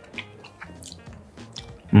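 Background music with a few faint, soft crunches of fresh pineapple.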